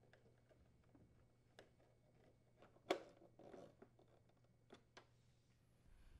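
Near silence broken by a few faint clicks, the clearest one about three seconds in, followed by a light scatter of small ticks: a nut driver turning the mounting screws of a refrigerator's plastic ice door assembly.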